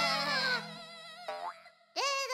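Cartoon characters giggling in high-pitched voices over a music bed, which fades out about half a second in. A short rising cartoon sound effect follows, then it goes almost quiet just before the end.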